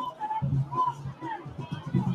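School band music from the stands, mixed with crowd voices.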